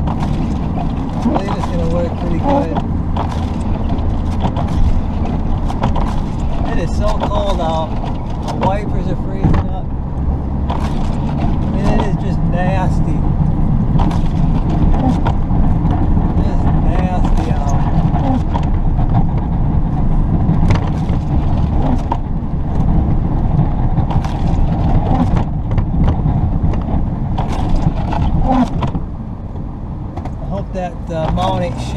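Inside the cab of a Chevrolet Silverado 3500 dually with a 6.6 L Duramax LB7 diesel: the engine runs steadily while the truck pushes snow with a V-plow, with frequent knocks and rattles from the truck and plow.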